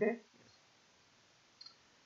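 A single faint, brief click about one and a half seconds into near-silent room tone, as the presentation slide is advanced. A spoken "okay" is heard at the very start.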